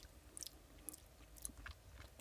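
A few faint, wet mouth clicks and lip smacks as sticky, sugary distillation residue is tasted off a finger.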